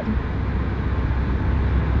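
Bentley Continental GT's W12 engine idling, heard from inside the cabin as a steady low rumble that grows slightly louder over the two seconds.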